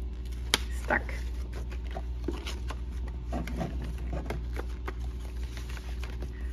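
Paper packaging rustling and clicking as a sheet of thin metal cutting dies is slid out of its paper sleeve by hand, with two sharper clicks in the first second and scattered small taps after. A steady low hum runs underneath.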